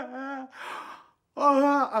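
A man's voice: a drawn-out, held vocal sound trailing into a breathy sigh, then a brief pause before he starts speaking again near the end.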